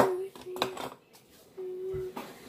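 A kitchen knife clinks sharply against a plate or dish once at the start, with a lighter second tap about half a second later.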